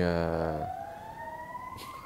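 An emergency-vehicle siren wailing outside, its pitch sweeping slowly upward. It follows a drawn-out spoken 'uh' at the start.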